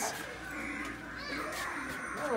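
Faint background voices over low room noise, with no one speaking close by.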